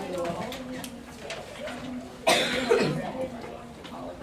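A single cough about two seconds in, loud and sudden, over low chatter of students' voices.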